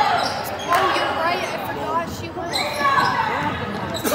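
A basketball bouncing on a hardwood gym floor during play, with voices calling out over it in the gym.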